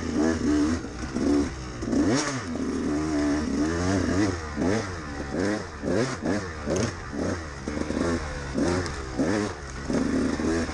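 2013 KTM 200XC-W two-stroke single-cylinder dirt bike engine, heard from the rider's seat, revving up and down sharply more than once a second as the throttle is worked on a tight woods trail.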